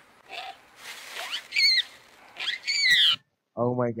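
Hamadryas baboons screaming while fighting over food: several shrill, wavering screams that fall in pitch, the loudest two in the second half. They cut off abruptly near the end.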